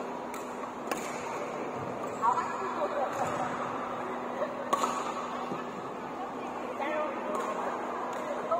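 Badminton hall ambience: a steady hubbub of background voices over a low constant hum, with a few sharp cracks of rackets hitting shuttlecocks, a few seconds apart.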